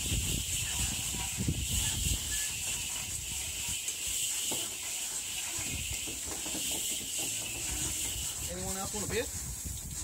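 A couch being hauled by hand up over a garage roof edge: irregular low scraping and knocks of its frame against the roof, under a steady high hiss that stops near the end.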